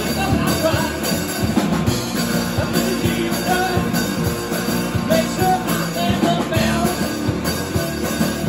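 Live rock band playing a self-described sea shanty, with a drum kit and electric guitar.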